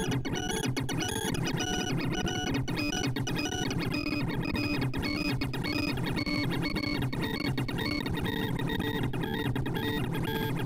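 Sorting-algorithm sonification from ArrayVisualizer: a rapid, dense stream of short synthesized notes, each note's pitch set by the value of the array element being accessed. The notes step up and down in pitch as pancake sort reverses runs of a 128-element sawtooth array.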